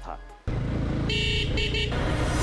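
Motorcycle running on a road, cutting in about half a second in, with a vehicle horn sounding twice, under background music.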